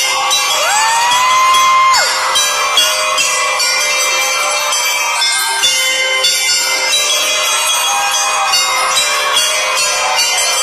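A school drum-and-lyre band playing, with bell lyres and bar chimes ringing over drums. Near the start a single clear tone glides upward, holds for about a second, then cuts off.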